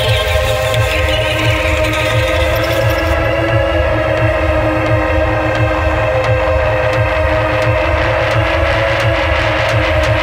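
Electronic music: a steady pulsing bass under sustained synth tones.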